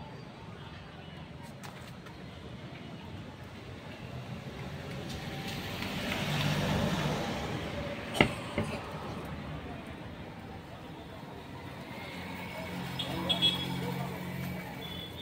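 Road traffic noise, swelling as a vehicle passes about six to seven seconds in. A sharp click comes just after eight seconds, and short high tones follow near the end.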